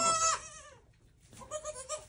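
Goat bleating: a short, high call at the start, then another call beginning near the end.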